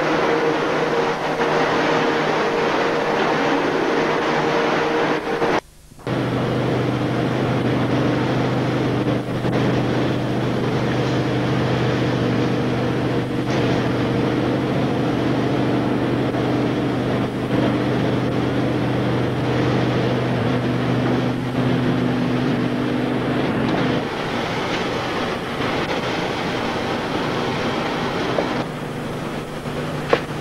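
Steady machinery running with a droning hum, cut off abruptly for a moment about six seconds in; after the break the hum settles at a different, lower pitch and shifts again near the end.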